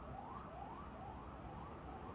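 A faint siren in the background, a quick rising wail repeating about two and a half times a second, over a low steady hum.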